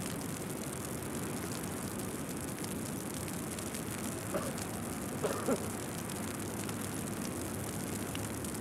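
A small open boat under way on choppy sea: a steady drone of engine and water noise. There are brief faint voices around the middle.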